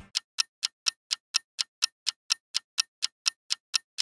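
Countdown timer ticking sound effect, a clock-like tick about four times a second, marking the seconds left to guess.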